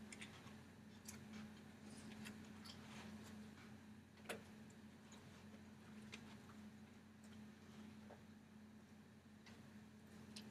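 Near silence: classroom room tone with a steady low hum and scattered small clicks and taps, the loudest about four seconds in.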